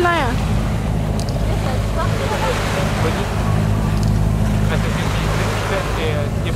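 A sailboat's auxiliary engine running steadily under way, a low even drone, over a steady hiss of water and wind.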